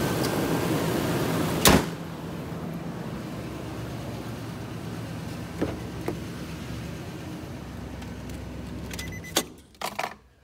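2014 Nissan Titan's 5.6-litre V8 idling, with one loud slam about two seconds in, after which the idle is quieter and duller, as with the hood shut. Near the end the engine is switched off, followed by a few light clicks.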